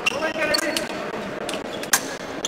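Footwork of two épée fencers on the piste: shoe squeaks and thuds as they move in guard, with a sharp click near the end.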